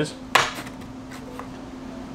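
A single short, sharp click about a third of a second in, then a steady low hum.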